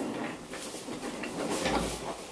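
Office chair being pulled over on its casters and sat in, with rolling and rustling noises and a soft low thud near the end as the weight settles into the seat.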